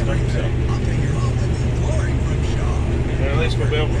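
Steady hum of a Case IH 5088 combine's engine and threshing machinery running while harvesting soybeans, heard from inside the cab.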